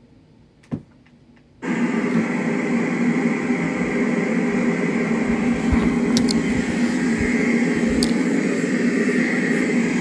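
White noise machine switched on: a short click, then a steady hiss that starts abruptly about a second and a half in and holds evenly.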